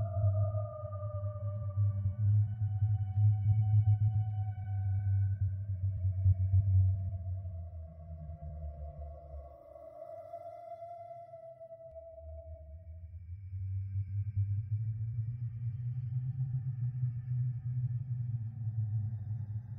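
Creepy horror ambience: a low drone with slow, wavering higher tones gliding over it. The drone drops away for a couple of seconds about halfway through, then swells back in, while the higher tones fade out.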